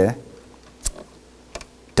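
A pause in a man's speech filled by a few small sharp clicks, the clearest a little under a second in. Speech resumes at the very end.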